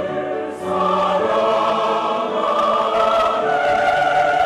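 Mixed church choir singing a sacred anthem in Korean in full voice. The voices hold long, sustained notes, with a brief breath break about half a second in before the next phrase begins.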